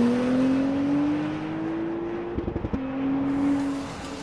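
Acura NSX Type S's twin-turbocharged V6 accelerating hard, its pitch rising steadily for over two seconds. Then a quick upshift with a short stutter, and the engine pulls on at a lower pitch.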